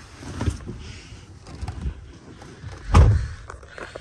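Handling and rustling noises inside a truck cab, with small knocks and one heavy, dull thump about three seconds in.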